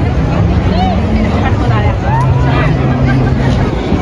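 Chatter of a busy crowd of people milling in an open square, many voices at once, with a low steady drone under it that shifts pitch now and then.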